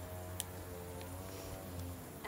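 Quiet background music of steady held notes, with a sharp click about half a second in and a fainter click about a second in.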